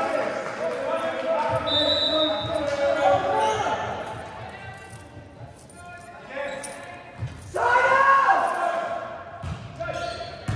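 A volleyball bouncing a few times on a hardwood gym floor, among players' shouts that echo in the large gymnasium. The loudest shouting comes about three-quarters of the way through.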